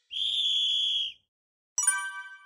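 A whistle sound effect for the end of a game: one steady, shrill blast held for about a second. Near the end a bright chime strikes and rings on, as an answer is revealed.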